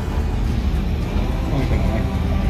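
Air-cooled Porsche 911 flat-six engines running as classic cars move off at low speed, with music playing over them.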